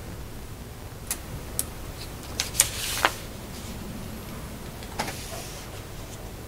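A handful of sharp clicks and knocks, loudest about halfway through, with short rustles after two of them, over a steady low room hum.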